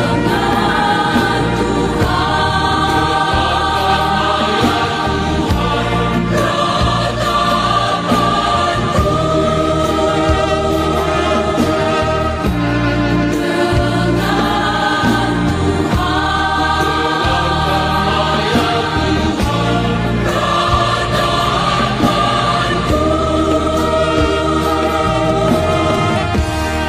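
Choir singing a Christian worship song in long, held chords that move together phrase by phrase over steady low notes.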